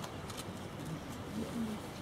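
A pigeon cooing, with short low coos most distinct about three-quarters of the way through, over steady outdoor background noise.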